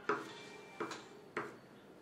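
Kitchen knife chopping carrot into small dice on a wooden cutting board: three sharp chops of the blade through the carrot onto the wood, each a little under a second apart.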